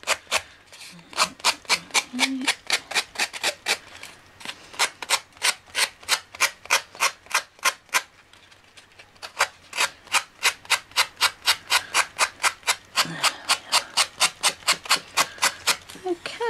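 A strip of sponge sanding block rasping in short downward strokes along the edge of a paper-covered MDF heart, about four strokes a second, sanding off the overhanging paper edge. The sponge is a bit too new. The strokes pause for about a second a little past halfway, then carry on.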